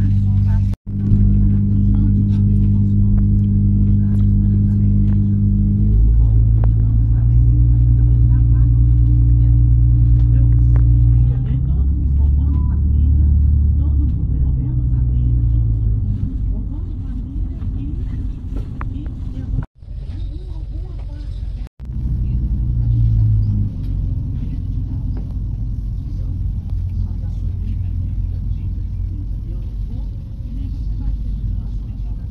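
A diesel train's engine and running noise, heard from inside the passenger car as a steady low drone. Its pitch steps down and shifts several times, in the first half especially. The sound cuts out briefly three times: about a second in, and twice near two-thirds of the way through.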